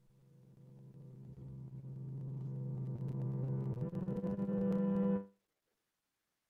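Opening of a film soundtrack: a sustained synthesizer drone swelling steadily louder for about five seconds, then cutting off abruptly.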